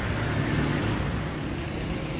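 Steady street noise: a low rumble of traffic with no separate events.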